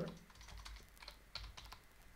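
A few faint, scattered computer keyboard keystrokes while editing code.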